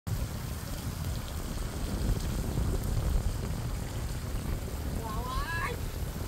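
Wind buffeting the microphone over the steady hiss and splash of a park fountain's spraying jets.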